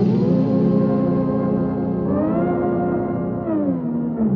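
Background electronic music: a sustained synthesizer chord that shifts up in pitch about halfway through and glides back down near the end.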